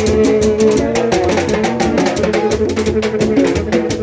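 Haitian rara band playing: held, shifting notes from the band's trumpets over fast, dense drumming and rattles.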